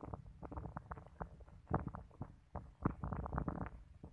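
Irregular low rumbling and crackling on a handheld phone's microphone, in uneven pops several times a second, typical of wind and handling noise as the camera moves.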